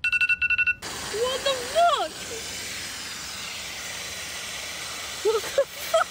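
A brief rapid buzz, then a steady static-like hiss that lasts about five seconds, with a voice rising and falling over it a second or two in.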